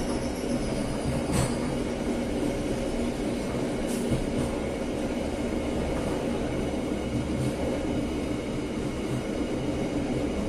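KA Bengawan passenger train running along the track, heard from its rear car: a steady rumble of wheels on rails, with a few brief sharp clicks, about a second and a half and four seconds in.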